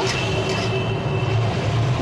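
Small prawns sizzling in hot oil in a kadhai on high flame, over a steady low hum.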